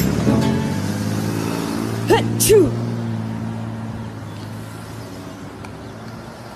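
A steady low motor-like drone that slowly fades away, with two brief rising-and-falling vocal cries about two seconds in.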